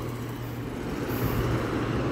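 Steady low hum over a faint, even background noise.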